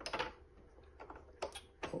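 Three short, sharp clicks about half a second apart from the upper thread spool and scissors being handled on top of an embroidery machine during a thread change.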